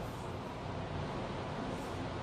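Steady, faint background noise with no distinct event: room tone in a pause of speech.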